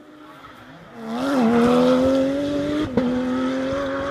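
Porsche 911 GT3 rally car's flat-six engine pulling hard, getting loud about a second in and holding a slowly rising note. Near three seconds in there is a sharp crack and a small drop in pitch before it climbs again.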